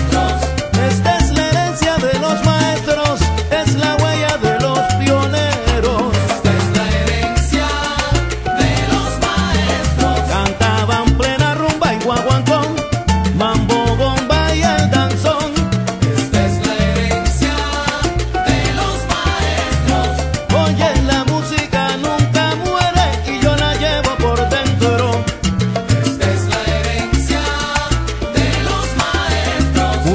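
Salsa band music in an instrumental passage without singing, driven by a repeating syncopated bass line under dense percussion and instruments.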